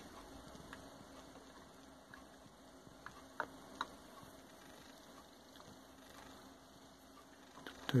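A few light clicks about three to four seconds in, as the aluminium rocker box of a Honda XL500 engine is lowered over the studs onto the cylinder head. Otherwise quiet room tone.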